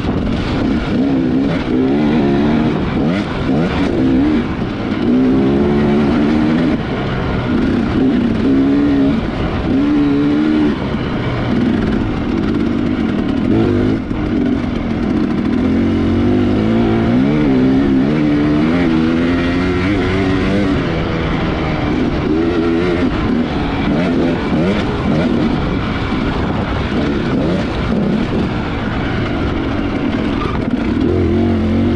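2018 Husqvarna TX300 two-stroke enduro bike with a Keihin carburettor, ridden hard: the engine's pitch rises and falls over and over as the throttle is opened and closed.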